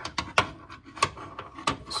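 Metal door check (door stop) being worked up through the inside of a Honda Ridgeline's rear door, giving about five irregular sharp clicks and knocks against the door's sheet metal.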